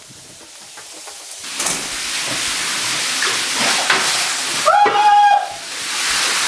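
Shower spray running, a steady hiss of water that comes in about a second and a half in and holds. A brief high-pitched squeal sounds near the end.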